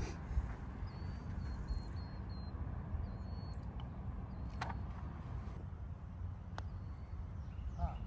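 Wind rumbling steadily on the microphone on an open golf green, with a bird chirping in short high notes. A single sharp click about halfway through, the putter striking the golf ball.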